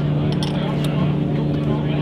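An engine running steadily, a low even hum that does not change, with a few faint clicks about half a second in.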